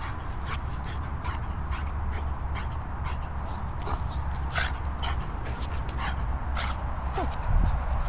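French bulldog playing with a rope tug toy, making irregular short sounds throughout and a brief falling whine near the end, over a steady low rumble.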